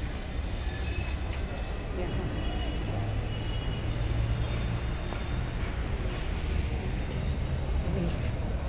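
Outdoor background noise: a steady low rumble, with a low hum joining for about two seconds roughly three seconds in.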